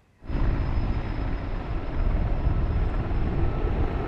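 Steady drone of a firefighting aircraft's engines overhead, with a heavy low rumble, starting suddenly a quarter second in.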